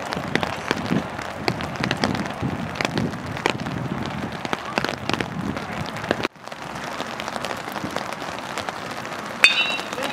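Light rain pattering, an even hiss full of small drop clicks, with faint voices from the field. The sound breaks off for an instant a little after six seconds, and a sharp ringing knock comes near the end.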